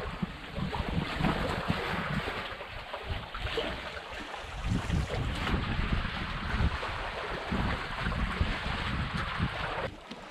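Wind gusting on the microphone, a rumbling buffet, over small waves washing and lapping against a rocky shoreline.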